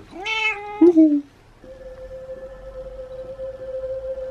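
Tabby cat meowing twice in the first second or so: a longer call, then a short falling one. A steady single tone then sets in from a video playing on a laptop and holds to the end.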